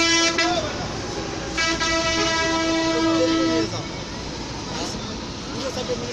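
A vehicle horn sounding in long, steady blasts: one ends about half a second in, and another is held for about two seconds from about a second and a half in, over background chatter.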